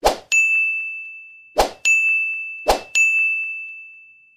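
Animated 'like, share, comment' outro sound effects: three times a short pop followed by a ringing ding that fades out, one for each button popping onto the screen, about a second apart.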